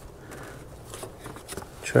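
Faint rustling and scraping of gloved hands pushing an oxygen sensor's wire into a plastic retaining clip, a few small ticks over a low hiss, with a spoken word near the end.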